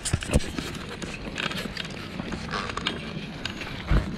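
Footsteps on a gravel path, with a few sharp knocks from handling a body-worn camera, the loudest just after the start.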